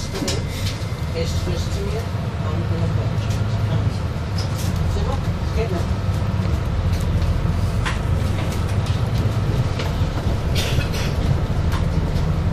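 City bus heard from inside near the front, its engine pulling away from a stop and driving on. There is a steady low drone that grows louder over the first few seconds, with scattered clicks and rattles from the bus.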